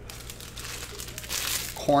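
Foil wrapper of a 2016-17 Panini Select Soccer trading-card pack crinkling as it is handled and opened, louder about a second and a half in.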